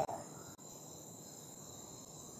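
Faint, steady high-pitched chirring of crickets, several steady tones at once, in a pause between speech.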